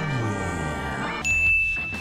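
A single bright ding, a bell-like tone that starts suddenly about a second in and rings on steadily. Before it, a drawn-out voice rises and falls in pitch.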